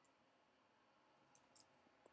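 Near silence, with a few faint computer-keyboard clicks near the end as keys are typed.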